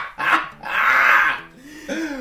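Two men laughing hard: short bursts of laughter, then one long, hoarse laugh in the middle.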